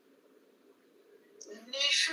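Speech only: a short pause with faint room tone, then a person's voice starts speaking about a second and a half in.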